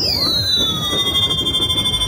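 Electronic pop backing track over PA speakers starting its intro: a siren-like synth sweep, several high tones gliding down in pitch and settling into a held chord, over crowd murmur. A steady bass beat comes in just at the end.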